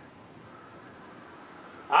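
Faint room hiss in a pause between speech, with a faint thin high tone in the middle.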